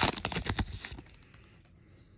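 Foil trading-card pack wrapper crinkling as it is pulled open, a quick run of crackles that dies away after about a second.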